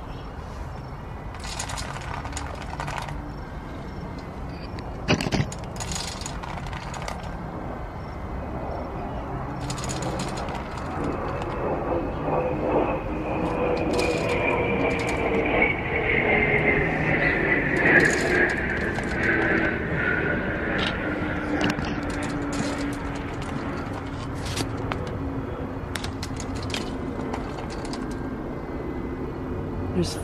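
An engine passing at a distance, its hum growing louder mid-way and slowly falling in pitch over about ten seconds, with scattered light clicks and taps throughout and a sharp knock about five seconds in.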